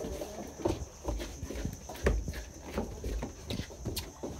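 Irregular knocks and thumps on a boat's deck, several a second, with low rumbling swells underneath.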